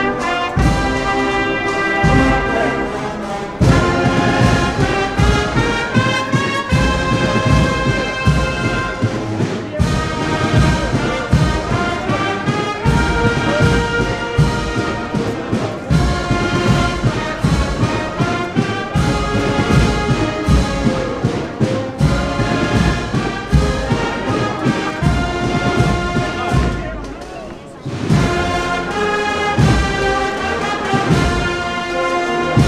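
A brass band with drums playing a processional march: sustained brass over a steady drumbeat. The music dips briefly near the end, then comes back at full strength.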